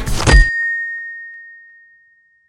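A loud hit abruptly cuts off the music and noise, leaving a single high ringing tone that fades away over about a second and a half: a film sound effect on a smash cut to black.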